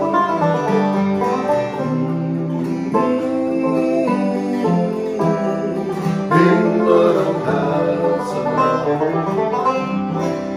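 A banjo and an acoustic guitar playing a tune together, the banjo picked over the guitar's chords.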